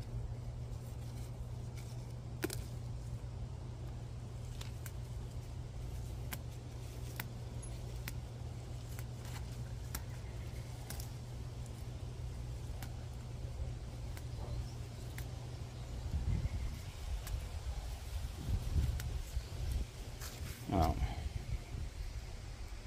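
Leafy herb sprigs being picked off by hand: small irregular snaps and leaf rustles over a steady low hum.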